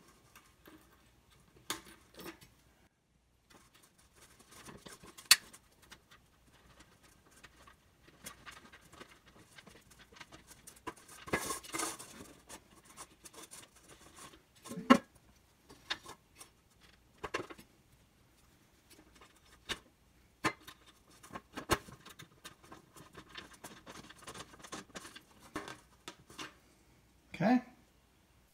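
Hands fitting a banana plug, washer and nut through a rubber grommet in an empty metal paint can: scattered small clicks, taps and rattles of metal parts against the can.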